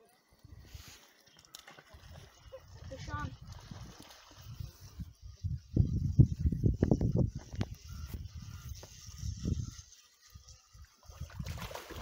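Wind buffeting the microphone in low, uneven rumbling gusts, heaviest in the middle and dropping away near the end.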